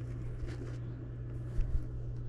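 A steady low hum under quiet room noise, with one soft handling thump about a second and a half in.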